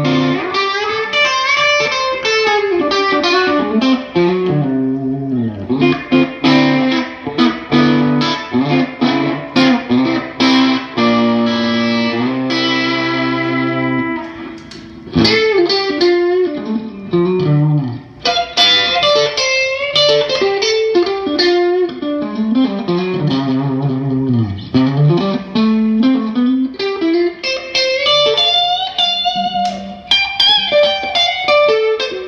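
Fender Custom Shop Rosewood Telecaster electric guitar being played in a demo: quick runs of single picked notes and licks, with a chord held for a few seconds about eleven seconds in.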